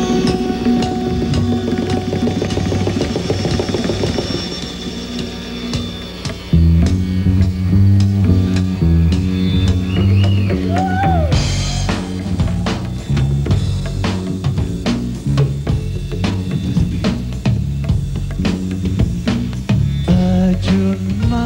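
Live rock band with sitar. Sustained sitar notes open, then bass and band come in louder at about six and a half seconds, and drums start up with steady hits about halfway through.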